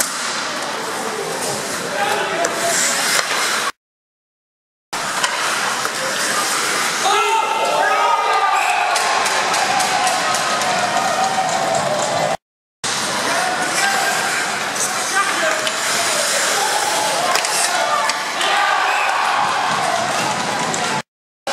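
Ice hockey game sound in an echoing rink: sharp clacks of sticks and puck on the ice and boards, under shouting voices from players and spectators. The sound cuts out completely twice, for about a second near the fourth second and briefly in the middle.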